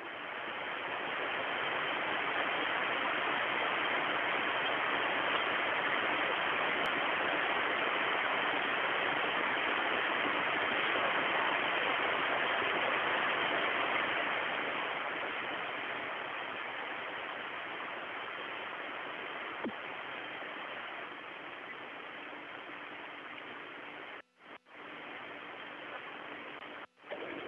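Steady hiss of static on the Soyuz capsule's air-to-ground radio link. It swells in over the first couple of seconds, eases off somewhat after the middle and briefly cuts out near the end.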